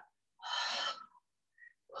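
A yoga instructor's single audible in-breath, lasting well under a second, about half a second in.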